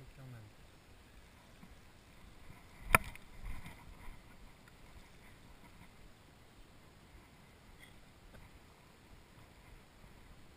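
The bail of a spinning reel snapping shut after a lure cast, with one sharp metallic click about three seconds in and a couple of small knocks just after it.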